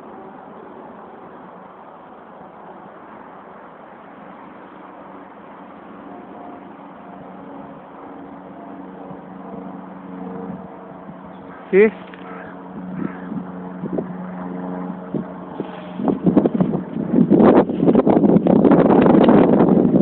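Low, steady outdoor hum of distant road traffic with faint steady tones in it. About four seconds before the end, loud gusting wind noise on the microphone takes over.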